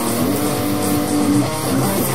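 Distorted electric guitar playing a metal riff: a held note slides up about a quarter second in and sustains for about a second before the riff moves on.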